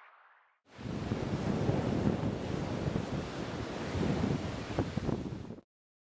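A steady rushing noise that starts abruptly about a second in and cuts off suddenly near the end.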